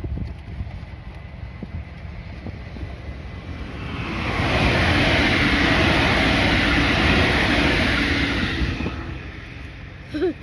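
Electric passenger train passing close by, its wheel and rail noise building from about three seconds in to a loud, steady rush for about four seconds, then fading away.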